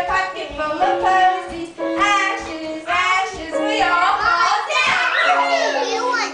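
Piano playing a tune in held notes while young children sing along.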